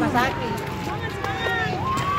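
Ambulance siren wailing: a single tone sliding slowly down in pitch, then jumping and climbing again near the end. People's voices sound over it.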